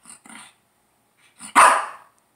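A Shih Tzu gives one loud bark about one and a half seconds in, after a couple of much quieter short sounds near the start. It is barking up at a tennis ball lodged on a chair out of its reach.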